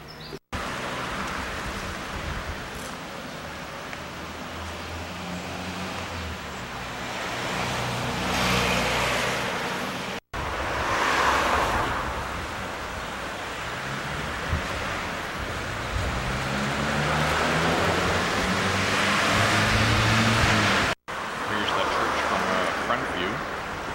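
Street traffic: cars drive past one after another, engine hum rising and falling with tyre noise swelling loudest about a third of the way in, around the middle, and again near the end. The sound cuts out for an instant three times.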